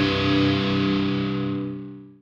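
The final chord of a post-hardcore/metal song on distorted electric guitar, held and ringing out. It fades away through the second second, the highs dying first.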